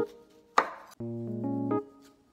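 Chef's knife slicing through an orange onto a wooden cutting board: one sharp knock about half a second in, with a brief rasp after it. Background keyboard music chords play around it.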